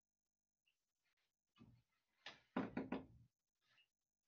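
Near silence broken about halfway through by a short cluster of soft knocks and thumps, the loudest few close together.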